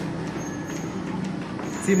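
Steady background noise with a faint low hum during a pause in speech, then a man's voice starts again near the end.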